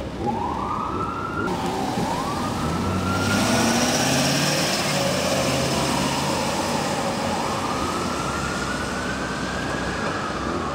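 Ambulance siren wailing, its pitch sweeping slowly up and down.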